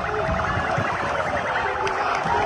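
A rapidly pulsing electronic siren, with a crowd of football fans shouting beneath it.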